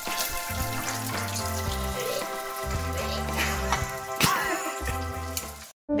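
Battered chicken fillets frying in a pan of hot oil, a steady sizzle, under background music with a bass line. The sound drops out briefly near the end.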